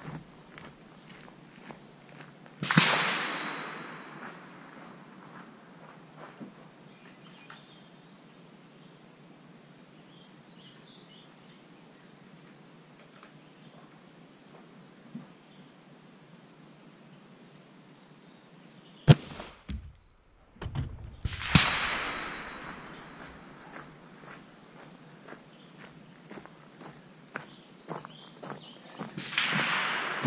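Rifle shots with a 6.5 Creedmoor, low-velocity 123 gr Fox load: one very sharp crack about two-thirds of the way in, as the bullet strikes and passes through the gel blocks. There are also three gunshot reports that each die away over a couple of seconds, about three seconds in, just after the crack and near the end.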